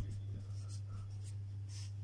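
Marker pen writing: a few faint, short scratchy strokes over a steady low hum.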